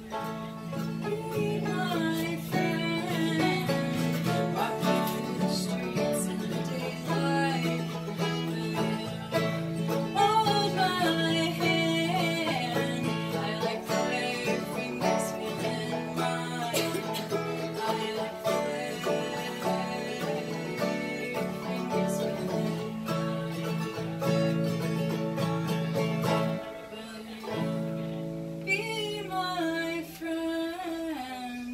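A string band playing bluegrass-style music on banjo, acoustic guitar and a second guitar, strumming and picking steadily, with a short lull a few seconds before the end.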